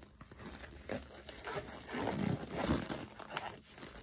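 Disposable gloves being pulled onto the hands: irregular crinkling and rustling with a few sharp clicks, loudest around the middle.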